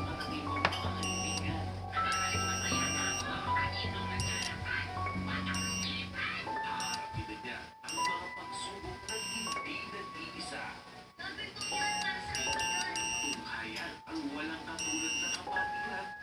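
Background music with a synth melody, over which a high-pitched electronic alarm buzzer sounds in several short beeps of uneven length.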